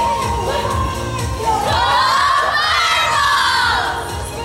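A group of girls shouting a team cheer together out of a huddle, their voices rising and falling in one long drawn-out call, over pop music with a steady beat.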